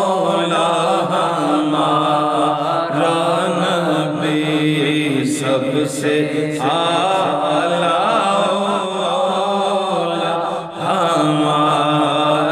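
A man reciting an Urdu naat, chanted solo in long, drawn-out melodic phrases, with a brief breath pause near the end.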